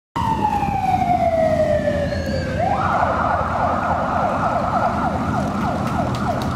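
Electronic police siren: a wail falling slowly in pitch, then, about two and a half seconds in, switching to a rapid yelp of repeated falling sweeps. Underneath is the low running of passing motorcycle engines.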